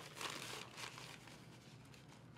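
Paper towel rustling and crinkling as a dotting tool is rubbed clean in it. It is faint, and strongest in the first second.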